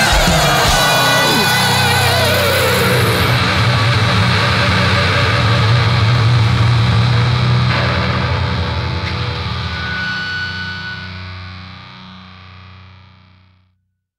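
Death metal song ending on a held, distorted electric guitar chord that rings out and fades away to silence just before the end, with wavering, bending high tones over it in the first few seconds.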